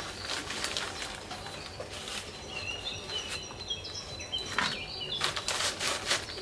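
Gloved hands scooping potting soil from a plastic bag and dropping it into a large plastic planter, heard as a few short rustling scrapes, the loudest cluster near the end. Small birds chirp briefly in the middle.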